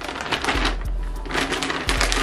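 Black plastic poly mailer bag crinkling as it is pulled open and handled, a dense, continuous crackle.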